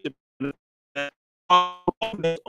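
A short musical jingle or sound-effect stinger: a string of single pitched notes, each struck and quickly dying away, about one every half second.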